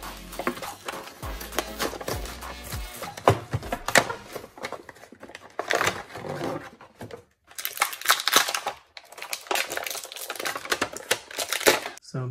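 Stiff plastic blister packaging crinkling, cracking and tearing as an action figure is pulled out of its card-backed pack, in irregular spurts with short pauses.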